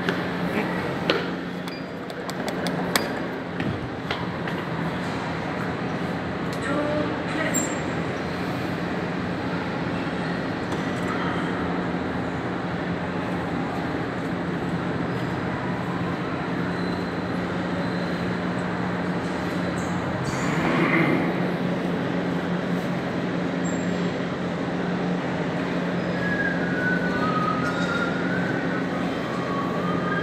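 Schindler glass passenger lift travelling down between car-park levels: a steady hum with a constant low tone under general background noise. A few sharp clicks come in the first few seconds and a brief louder rush about two-thirds of the way through.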